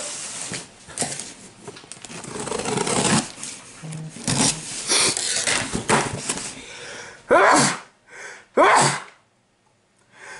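A man sneezing twice, about a second and a half apart, sharp and loud, from allergies. Before that, several seconds of irregular rustling and handling noise.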